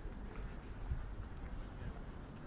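Footsteps of someone walking on a street pavement, a few soft knocks over a low rumble of wind on the microphone, with faint voices from people nearby.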